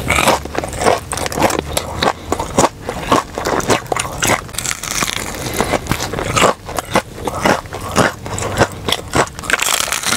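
Crispy breaded Jollibee fried chicken being bitten into and chewed close to the microphone: a dense run of sharp, crackly crunches as the crust breaks.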